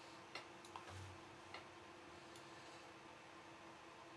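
Near silence: faint steady room hum with a few light clicks of a computer mouse in the first half.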